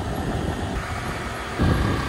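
Motor vehicle noise outdoors: a steady low engine rumble with road noise, swelling about one and a half seconds in as a vehicle passes.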